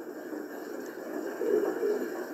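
Background noise of a voice-call line in a pause between turns: a steady low hiss and hum, with a faint low murmur swelling about one and a half seconds in.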